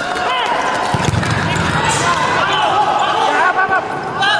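Rubber-soled indoor shoes squeaking on a synthetic futsal court: many short, sharp squeaks in quick succession as players run, turn and stop.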